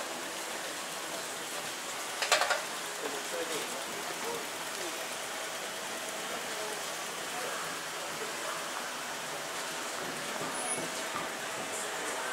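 Covered shopping-arcade ambience: a steady hiss of background noise with faint voices of passing shoppers. A brief clatter of sharp clicks about two seconds in is the loudest sound.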